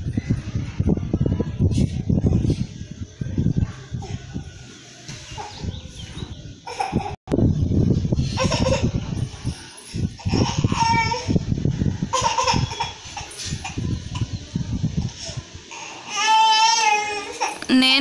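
A toddler crying in short broken bursts, ending in a long, high wail near the end, under a low rumbling noise.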